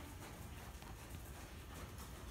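Hoofbeats of a horse moving around an arena on sand footing, faint over a low steady rumble.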